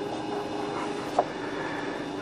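A steady low background hum with a faint single click about a second in.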